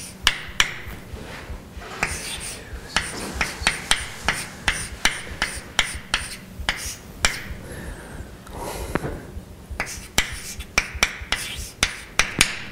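Chalk writing on a blackboard: an irregular run of sharp taps and short strokes, several a second, as a formula is written.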